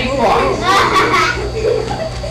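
Children's voices talking and calling out, too unclear to make out words, over a steady low hum.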